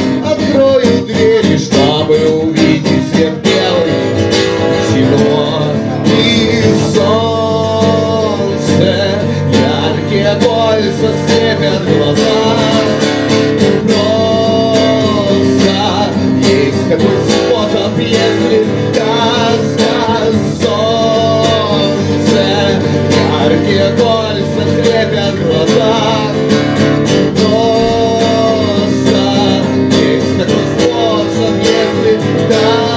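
A live song played on a strummed acoustic guitar, with a melody of long, bending notes carried over it.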